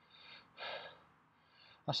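A man breathing out in a few short, faint gasps through an open mouth, reacting to the burn of a very hot chili pepper; he starts speaking near the end.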